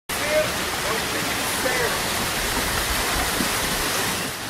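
A small waterfall splashing steadily over rocks into a pond, giving a constant rushing hiss.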